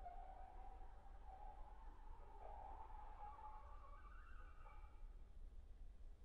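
A very faint, soft high horn note held pianissimo, wavering and sliding slowly upward before dying away about five seconds in, as the slow movement ends.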